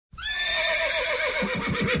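A horse whinnying: one loud call that starts high and steady, then falls away in a quavering run of pulses near the end.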